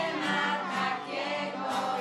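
A group of small children and women singing a song together, accompanied by a strummed acoustic guitar.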